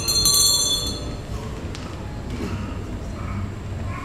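Small Tibetan ritual hand bell ringing with high, steady tones that die away about a second in, leaving the low murmur of a hall.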